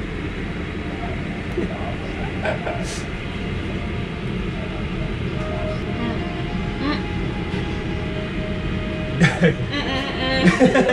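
Restaurant room noise: a steady low rumble with faint background voices and music, a few small clicks, and a short burst of voice near the end.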